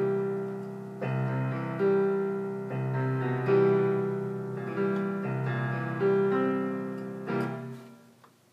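A two-handed chord progression on a portable electronic keyboard with a piano voice. The sustained chords change about once a second, diminished chords rolling into sevenths, and the playing stops right at the end.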